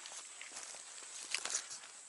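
Footsteps rustling and crackling through dry leaf litter and twigs on a forest floor, with a brief cluster of crackles about a second and a half in, over a steady high insect drone.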